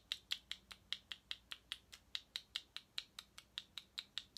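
A small plastic jar of loose eyeshadow pigment tapped over and over, light clicks at about five a second in a steady rhythm, to shake pigment out into its cap.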